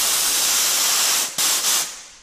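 Compressed air hissing out of a 15-gallon Craftsman portable air compressor as its tank is bled down by hand. A loud, even hiss breaks off briefly about one and a half seconds in, then comes back as a shorter burst that fades out.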